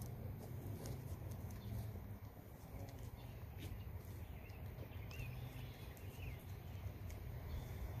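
A steady low hum with a few faint bird chirps in the middle and occasional light clicks; the seal sliding down the plastic-covered shaft makes no clear sound of its own.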